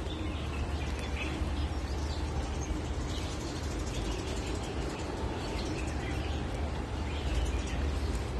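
Birds chirping now and then over a steady low rumble.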